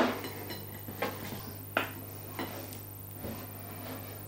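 Scattered faint clicks and light knocks of a clear plastic pudding basin being wiggled loose and lifted off a pudding on a ceramic plate: one sharper click at the very start, then four or so small knocks spaced irregularly, the clearest a little before two seconds in.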